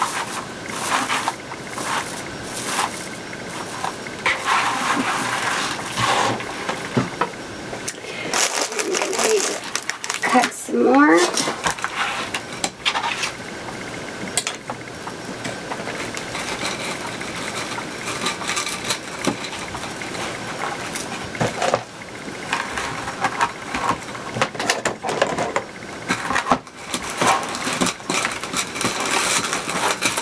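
Plastic deco mesh rustling and crinkling as it is handled, fluffed and unrolled from its rolls, with many small crackles and rubs. A brief rising squeak comes about ten seconds in.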